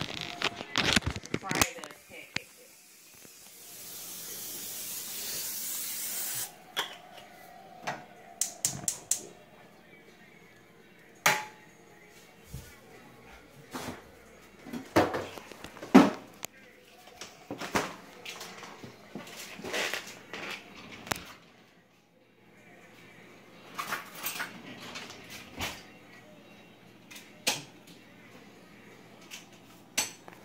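Olive oil cooking spray hissing out of its can in one steady burst of about four seconds, growing louder, about two seconds in. Scattered clicks and knocks of kitchenware follow.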